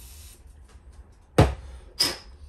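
Quiet room tone with a low steady hum, broken about a second and a half in by one short spoken word.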